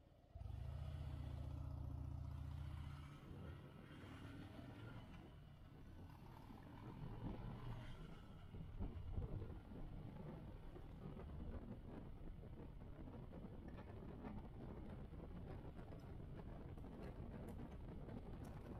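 Motorcycle engine pulling away from a stop and riding on. The sound comes in suddenly just after the start with a steady low hum, turns rougher and louder through the middle, loudest around eight to nine seconds, then settles to an even run.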